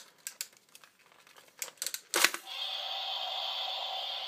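Plastic clicks and rustles from handling a Godzilla Atomic Roar toy figure, then a sharp click about two seconds in as its atomic-breath feature starts. The feature runs with a steady hissing buzz to the end.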